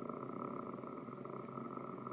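A woman's drawn-out, creaky-voiced hesitation sound, a low held 'euh' or hum, steady and even while she searches for her next word.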